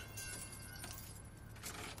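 Faint light jingling and clinks of a small metal chain as the two chained birds tumble onto the street, over a low steady hum.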